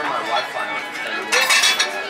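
Restaurant dining-room din: background voices of other diners with cutlery and dishes clinking, a busier patch of clinks about one and a half seconds in.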